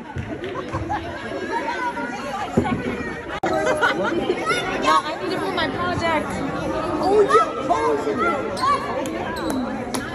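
Overlapping, indistinct chatter of many spectators in a school gymnasium during a basketball game, with no single voice standing out. There is an abrupt break about three and a half seconds in.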